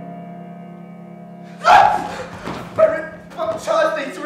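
A sustained low musical chord fading away, with its low drone held underneath; a little under two seconds in, a person's voice breaks into a series of loud, short, wordless cries.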